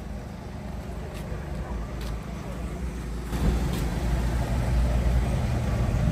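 Low outdoor rumble with no clear pitch, growing louder about three seconds in, with a few faint clicks.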